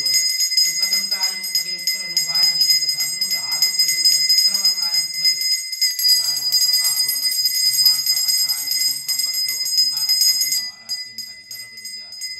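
Temple bell rung rapidly and continuously during a pooja, stopping about ten and a half seconds in, over a man chanting.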